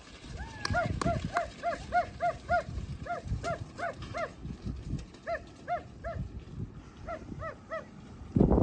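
A dog barking over and over in quick runs of short, high yaps, about three a second, with pauses between the runs.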